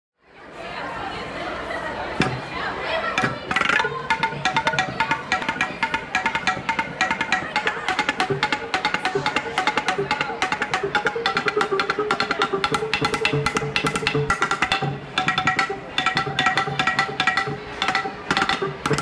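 Wooden baseball bats mounted as a xylophone, struck rapidly with mallets: a quick run of short, pitched wooden tones beginning about two seconds in, with brief pauses near the end.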